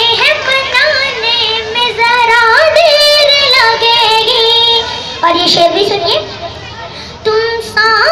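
A young girl singing an Urdu ghazal into a microphone, amplified over loudspeakers, with long held notes and ornamented turns of pitch. She breaks off briefly near the end and starts the next line.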